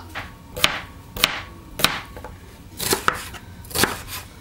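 Kitchen knife chopping red bell pepper on a plastic cutting board: five sharp cuts, the blade striking the board roughly every half second to a second.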